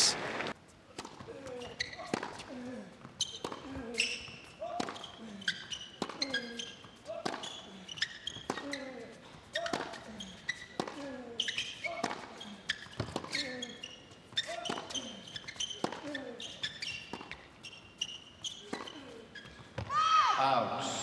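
Tennis rally on a hard court: racket strikes and ball bounces follow one another at a steady rhythm, about one every three-quarters of a second, with short squeaks of players' shoes on the court surface between them.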